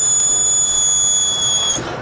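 Electronic buzzer giving one steady, high-pitched tone for nearly two seconds, cutting off suddenly near the end.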